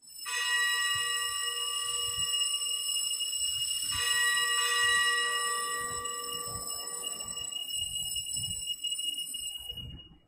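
A bell rung at the elevation of the host after the words of consecration: it is struck just after the start and again about four seconds in. Each stroke rings on in long, steady, high tones that slowly fade.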